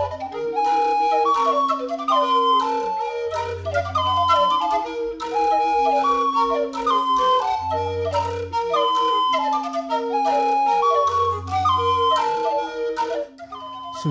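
A long wooden recorder playing a quick repeating figure of short notes, over low held notes that return about every four seconds.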